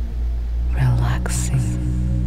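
Ambient sleep music with steady, low drone tones under a soft pad. A brief breathy whisper comes about a second in.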